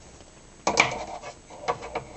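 A metal fork clinking and scraping against a glass measuring jug while stirring couscous and chopped vegetables: one sharp, briefly ringing clink about two-thirds of a second in, then light scraping and a couple of smaller taps.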